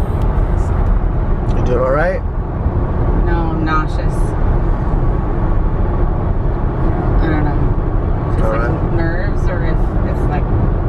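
Steady road and tyre noise inside a car cabin at highway speed.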